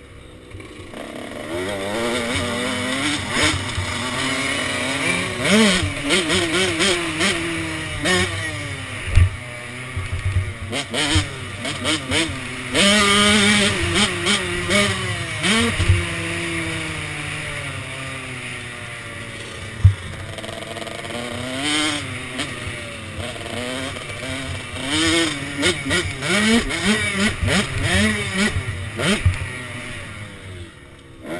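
KTM SX 105 two-stroke motocross bike ridden hard, its engine revving up and down again and again as the throttle opens and closes, heard from the rider's helmet camera. A few sharp knocks from the bike hitting bumps come through.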